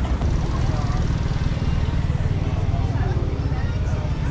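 Outdoor city street ambience: a steady, heavy low rumble of traffic and wind on the microphone, with indistinct voices of people nearby.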